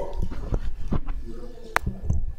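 Handling noise from a desk microphone: low knocks and bumps with faint murmured voices, and one sharp click near the end, just before the next speaker begins.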